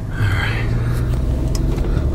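Car engine and road noise heard from inside the cabin as the vehicle drives off slowly: a steady low hum that grows slightly louder just after the start.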